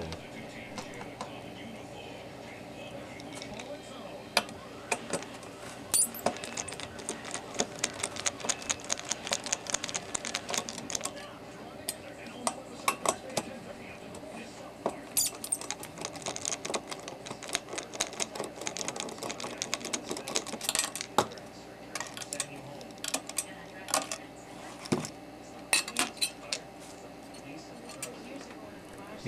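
Irregular small metallic clicks, taps and scrapes of hand tools on a circuit board and heatsink, in scattered clusters over a steady low hum: a probe wiggling the freshly desoldered, loose pins of an STK392 output chip, then a screwdriver working the chip's mounting screws.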